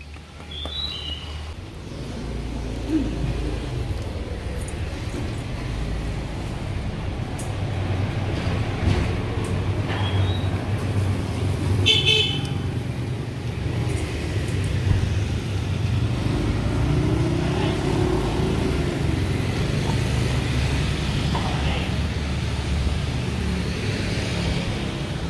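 Street traffic: a steady low rumble of passing vehicles, with a short car horn toot about halfway through.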